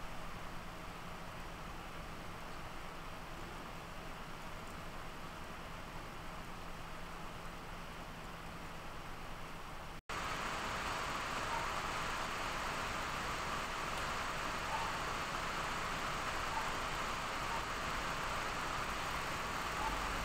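Geekom A7 mini PC's cooling fan giving a steady rush of air at idle, still spinning hard after a heavy load. After a break about halfway, the same fan runs louder and hissier under full load, at around 72 W.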